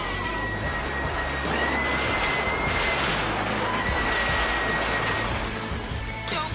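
Film soundtrack: music under a dense, noisy rush, with a long, high, held shriek that sounds three times.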